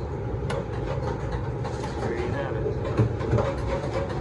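Nieco chain broiler running with its gas burners lit and the conveyor chains turning on a replaced drive motor and chain: a steady low rumble with the steel chains clicking and clanking now and then, one sharper knock about three seconds in.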